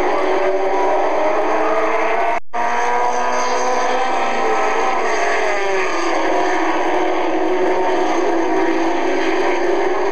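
Several race car engines running at speed together. Their overlapping notes drift slowly up and down in pitch, with a brief dropout in the sound about a quarter of the way through.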